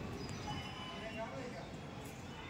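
Faint, distant voices of people talking over a low background murmur.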